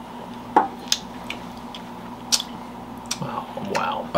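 Small glass tasting cups tapping against a wooden table, three sharp taps: about half a second in, just under a second in, and past two seconds. Quiet sipping and mouth sounds, over a steady low hum.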